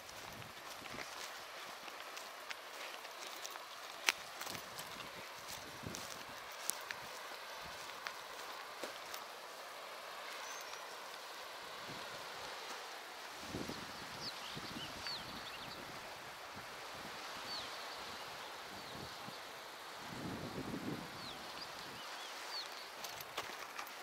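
Open-air ambience on a breezy sea clifftop: a steady faint hiss, with short high chirps of small birds from about ten seconds in. There are occasional sharp clicks from the handheld camera and a couple of low rumbles of wind on the microphone.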